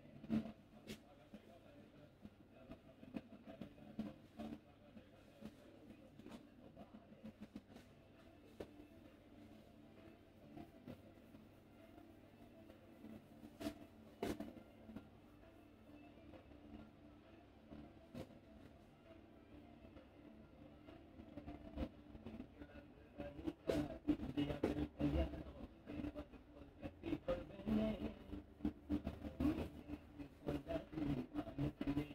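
Hands massaging an oiled scalp and hair: soft, irregular squishing, rubbing and patting, busier and louder in the last several seconds, over a steady low hum.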